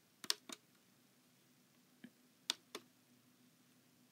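Faint short clicks from tapping a touchscreen internet radio while navigating its menus, three about half a second in and three more around the middle.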